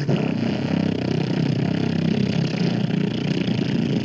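Live experimental noise music played through a small mixer: a continuous, dense, low rumbling drone with a gritty, engine-like grind and no pauses.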